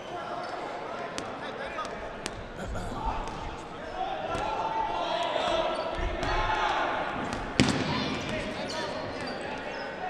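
Background chatter of players' voices in a large gym, with scattered thuds of dodgeballs bouncing on the hardwood floor; the loudest impact comes about seven and a half seconds in.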